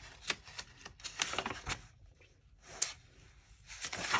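Paper pages of a paperback coloring book being turned by hand: a run of crisp rustles and flaps in the first two seconds, then a quieter stretch broken by one more sharp page rustle just before three seconds.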